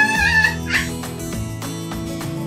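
Background music playing throughout, with a young girl's loud, wavering, high-pitched squeal in the first half-second and a shorter rising cry just after.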